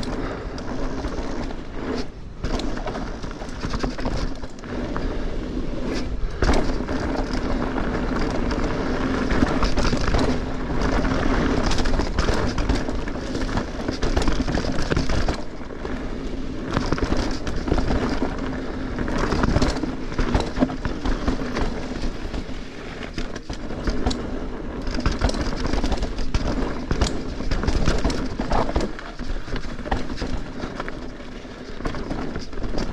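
Mountain bike rolling fast over a dirt and rock singletrack: continuous tyre noise with frequent knocks and rattles from the bike over bumps, under a steady low hum.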